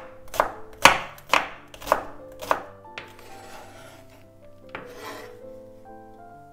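Chef's knife slicing an onion on a wooden cutting board, five crisp cuts about two a second, then a softer scrape of the blade gathering the chopped onion across the board. Quiet background music plays underneath.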